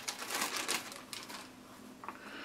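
A thin clear plastic bag crinkling as a paper instruction manual is pulled out of it. The crackling is strongest in the first second and dies down after about a second and a half.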